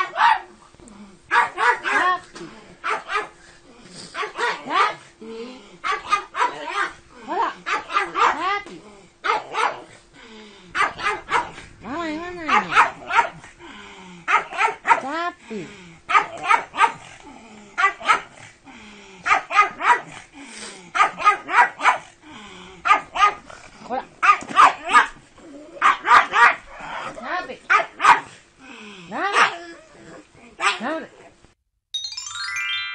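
A pug barking over and over in quick runs of short, sharp barks with brief pauses between the runs.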